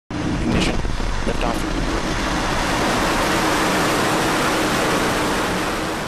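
Falcon 9 rocket lifting off: the steady, dense noise of its nine first-stage Merlin engines at full thrust. A commentator speaks briefly in the first second or so.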